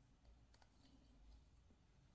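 Near silence: room tone with a few faint clicks from small objects being handled.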